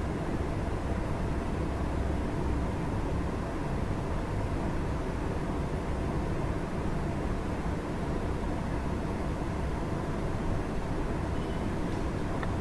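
Steady low background noise with a faint hum, unchanging throughout, with no distinct events.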